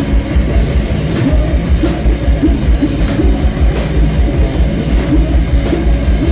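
A live rock band playing loud and heavy: distorted electric guitars and bass guitar with a thick, steady low end over drums and cymbals.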